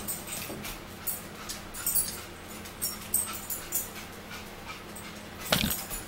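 A dog whining and whimpering, with scattered short clicks of eating and handling food, and one louder short sound about five and a half seconds in.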